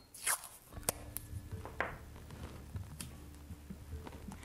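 Masking tape being pulled off the roll and torn, two short rips about a second and a half apart, with a few light clicks as the strip is handled and pressed onto a wooden tabletop.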